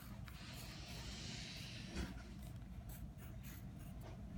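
Faint pencil writing on notebook paper: one soft scratching stroke over the first couple of seconds, then a few short strokes and a light tap about two seconds in.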